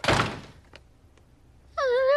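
A door slammed shut: one loud thud that dies away within half a second. Near the end a short, high, wavering cry begins.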